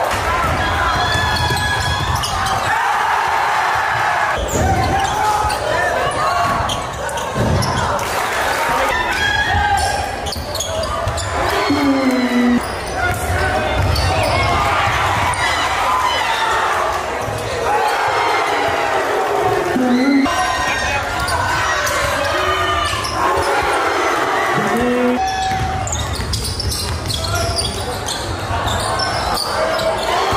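Basketball game sound in a gym: sneakers squeaking on the hardwood floor, the ball bouncing, and crowd voices echoing in the hall.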